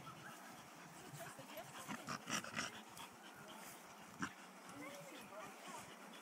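Two dogs playing tug-of-war over a rope toy, making faint play noises, with a cluster of sharper sounds about two seconds in and a single sharp click a little after four seconds.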